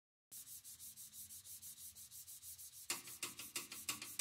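A hand scraping the strings inside a Steinway B grand piano in quick, even strokes, about five a second, played as a percussive texture. The strokes are faint at first and grow louder about three seconds in.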